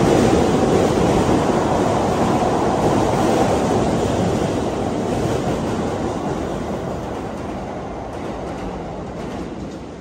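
Keikyu 1000 series electric train running past close by, a dense rumble of wheels and running gear that fades steadily as the train moves away.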